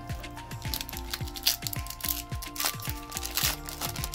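Background music with a steady beat, over the crinkling and tearing of a foil trading-card booster-pack wrapper being ripped open by hand.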